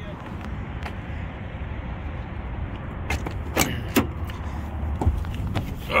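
A car door being unlatched and opened, a few sharp clicks and knocks about three to four seconds in, over steady wind and traffic noise.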